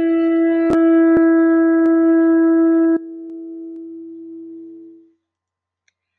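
A shofar sounded in one long, steady blast on a single note, held for about three seconds, then dropping off sharply and fading out by about five seconds. Two sharp clicks are heard early in the blast.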